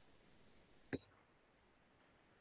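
Near silence with one short, faint click about a second in.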